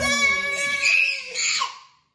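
Excited high-pitched vocal squeal from the family as a card is revealed, held at one pitch for about a second and a half before fading out.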